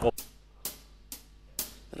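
Four sharp clicks, evenly spaced about half a second apart: a count-in just before a song's backing track starts.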